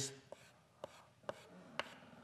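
Chalk striking a blackboard in short strokes, faint taps about two a second.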